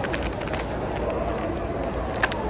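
Plastic blind-bag packet crinkling with sharp crackles as it is torn open by hand, over a steady background hubbub.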